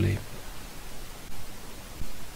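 A steady, even hiss of background noise in a pause between spoken sentences, with the end of a word at the very start.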